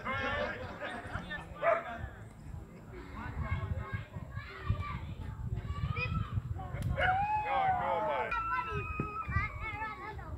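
Voices of players and onlookers calling and shouting across an outdoor cricket field, several overlapping, with a low rumble underneath. A single sharp knock comes about two-thirds of the way in.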